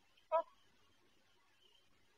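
A woman's short, soft "oh" about a third of a second in, then quiet room tone.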